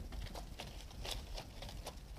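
Faint rustling with scattered light ticks: a flower stem being slid down through the leaves and woven stems of a vase arrangement.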